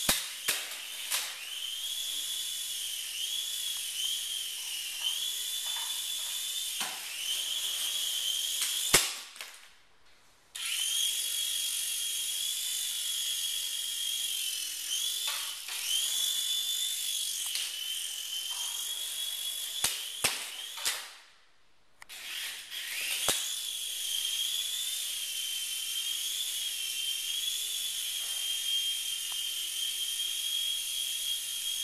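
Micro indoor RC helicopter's small electric motor and rotors whining at a high, wavering pitch, with scattered sharp knocks. Twice, after a loud knock, the whine winds down to near silence for about a second, as in a crash, then starts again abruptly.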